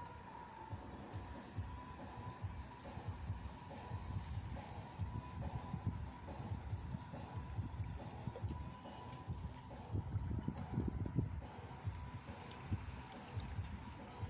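Wind buffeting the microphone on an open seashore: an irregular, gusting low rumble that swells about two-thirds of the way in, with a faint steady high tone underneath.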